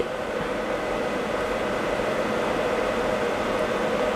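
A steady mechanical hum and hiss with a faint even tone running through it, unchanging throughout.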